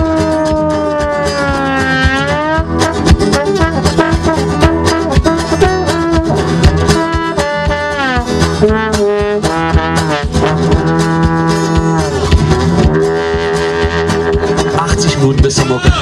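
Blues trombone solo with notes sliding from pitch to pitch over a strummed guitar accompaniment.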